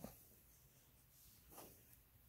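Near silence, with faint rustles of fingers stirring dry peat-based seed starting mix: once at the start and again about a second and a half in.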